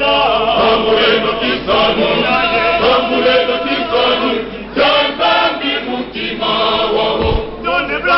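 Male choir singing a religious song in unison and parts, in phrases with short breaks between them. A brief low bump sounds near the end.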